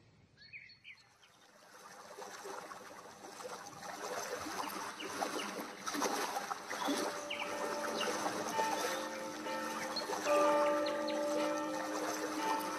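A few bird chirps, then the sound of a flowing stream rising in level. In the second half a slow instrumental music intro of long held notes comes in beneath them.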